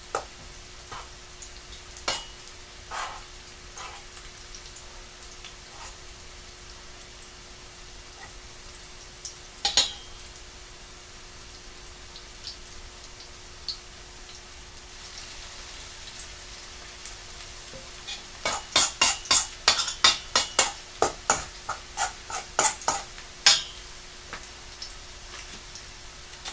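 Cauliflower fritters frying in oil in a skillet with a steady sizzle, while a metal spoon clinks and scrapes in a stainless steel mixing bowl of batter: a few single clinks at first, then a quick run of clinks in the last third. A faint steady hum runs underneath.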